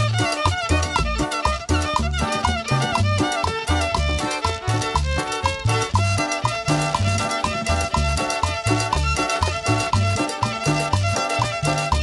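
Live chanchona band playing an instrumental dance passage with no vocals: violin, upright bass, guitar and timbales.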